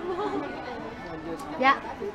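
Only speech: low background chatter of several voices, with a short spoken reply near the end.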